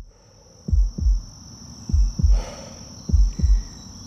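Heartbeat sound effect: three slow double thumps (lub-dub), about one every 1.2 seconds. Under it, a steady high insect trill from crickets fades in at the start.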